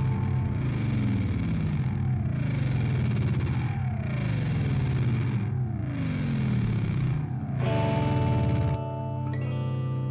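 Live band in an instrumental passage: distorted electric guitar through effects, with a falling pitch sweep repeating about every two seconds over sustained low notes, then held chords near the end.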